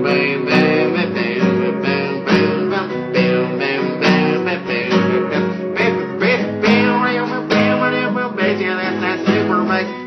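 Acoustic guitar strummed in a steady rhythm, chords ringing on without a break.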